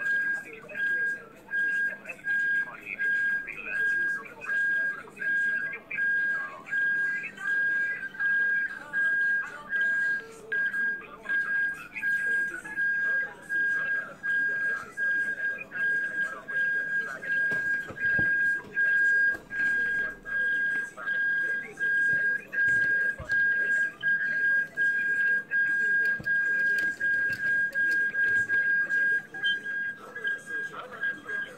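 A steady high-pitched whistling tone, pulsing regularly about twice a second, over faint irregular background sound.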